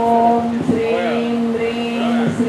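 Voices chanting a long, steady held note, broken briefly about half a second in while another voice sings over it, as in a Hindu puja chant.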